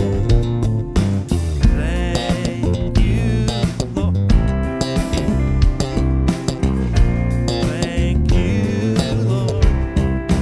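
Worship band playing a slow song, the electric bass deliberately overplayed with busy runs and fills where it would normally hold back: a demonstration of overplaying.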